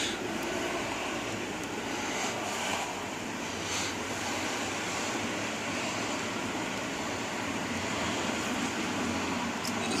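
Steady hiss and low hum inside a car, with a few faint handling sounds in the first few seconds.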